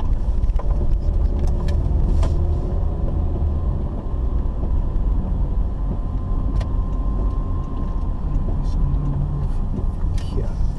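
Car driving on a wet road, heard from inside the cabin: a steady low rumble of engine and tyres, with a few sharp clicks scattered through it.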